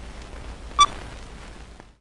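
Old-film sound effect: steady hiss with faint crackle, like a worn film reel running. One short, high beep comes a little under a second in and is the loudest thing. The hiss fades away just before the end.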